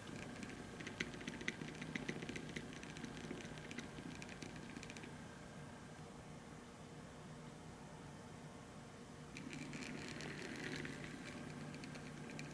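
Small 12 V stepper motor running under an Adafruit Motor Shield, turning a disc: faint irregular ticking over a low steady hum, growing a little louder near the end.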